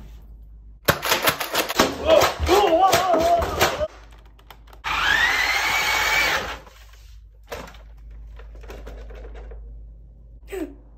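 Small electric motors of a tracked toy Nerf blaster whirring: a clattery, clicking run for the first few seconds, then a whine that rises and holds for under two seconds.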